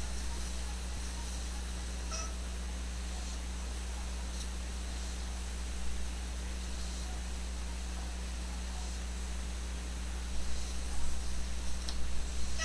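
Steady low hum and room noise, with a faint short high-pitched call about two seconds in and a few brief louder sounds near the end.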